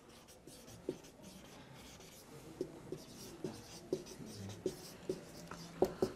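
Marker pen writing on a whiteboard: faint scratching strokes with a string of light ticks as the tip meets the board.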